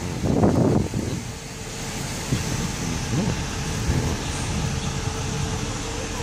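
A school bus's diesel engine running close by: a steady low rumble with a thin, steady whine over it, louder in the first second.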